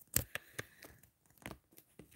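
Faint handling noise: a few scattered clicks and light rustles, the loudest just after the start.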